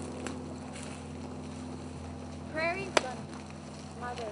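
A short, high-pitched voice sound that bends in pitch about two and a half seconds in, followed at once by a single sharp click. Under both runs a steady low hum.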